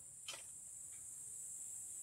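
Faint, steady high-pitched insect chirring, with a single click about a third of a second in.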